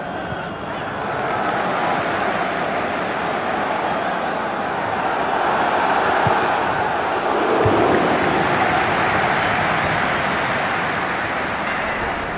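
A steady rushing noise of open-air pitch ambience that swells toward the middle, with two dull thumps a little past halfway.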